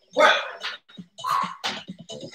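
A dog barking several times in short bursts, with light footfalls on a wooden floor between the barks.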